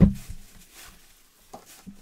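A cardboard jersey box being handled and turned over in the hands: a few faint rustles and light taps about one and a half seconds in, after a spoken word and a knock at the start.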